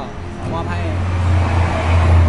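A motor vehicle passing close by: a low engine hum that comes in about half a second in and grows louder toward the end.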